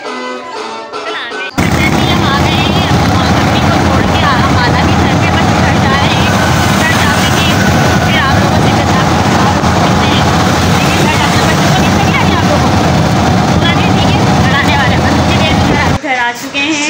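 Loud, steady engine and road noise heard from inside a moving auto-rickshaw, starting abruptly about a second and a half in. Before it, a moment of party music and chatter.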